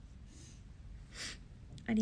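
A young woman's sharp sniffling inhale through the nose about a second in, with a fainter breath before it, as she is choked up with tears.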